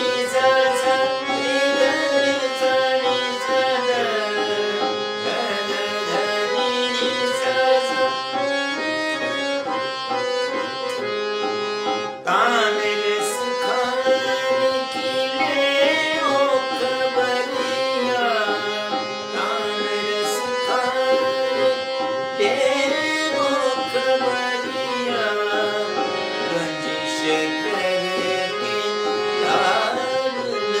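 Hindustani classical music in Raag Todi: a harmonium played in held and changing reed notes, with a man's voice singing gliding phrases over it and a tabla rhythm underneath.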